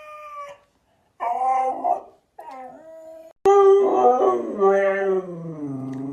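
Siberian husky 'talking' in drawn-out howling tones. A held note breaks off, two short yowling phrases follow, and then, after a sudden click, a louder, longer howl slides steadily down in pitch.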